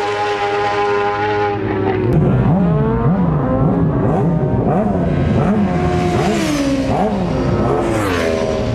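Racing motorcycle engines at high revs: one bike's engine note holds and fades away over the first second and a half, then another bike's engine is heard with its revs rising and falling about twice a second, growing louder until a falling pitch as it passes close at the end.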